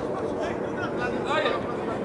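Distant voices shouting briefly over steady outdoor background noise, during open play in an amateur football match.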